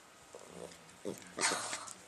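Two dogs, a dachshund and a small long-haired dog, play-wrestling: a faint low growl-like sound runs under short noisy bursts of breath and mouthing, the loudest about one and a half seconds in.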